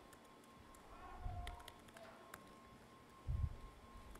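Faint laptop keyboard typing: scattered light key clicks, with two soft low thumps, one about a second in and one near the end.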